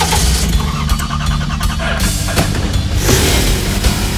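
Background music over a cartoon engine sound effect: the hair wagon's engine revved to push out green dye that is clogging it. The noisy engine sound changes about halfway through and again near the end.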